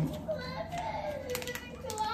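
A young child's high-pitched voice, rising and falling, with no clear words.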